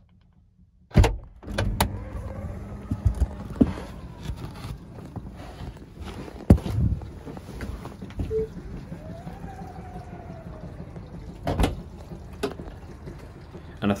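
Knocks, bumps and rubbing of a hand-held camera as someone climbs out of a Tesla Model X. There is a loud knock about a second in and sharp knocks around the middle and near the end, over a low steady rumble. A faint motor whine rises and falls partway through.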